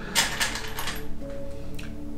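Small metal screws clinking against each other and a metal tray as they are picked out by hand, mostly in one short rattle just after the start. Faint background music with held tones runs underneath.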